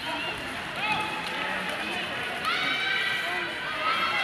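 Raised voices calling out across an ice hockey rink during play, with one long, high shout in the second half. Underneath is the rink's steady background noise.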